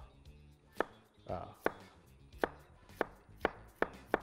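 Kitchen knife chopping cabbage on a cutting board: about five separate sharp knocks of the blade hitting the board, roughly one a second.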